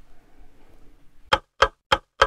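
Faint background for about a second, then loud, evenly spaced clock-like ticks begin, about three a second, three of them before the end.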